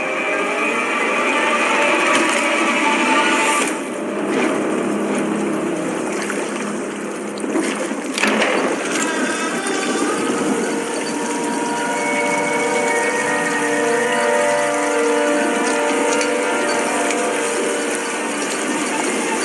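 Tense drama soundtrack: sustained drone tones over a steady noise bed, with a sudden sharp hit about eight seconds in, and layered held tones building through the second half.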